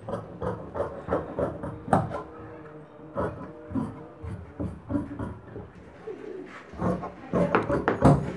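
Tailoring scissors cutting blouse cloth along pattern marks: a run of snips, about three a second, thinning out in the middle and quickening again near the end.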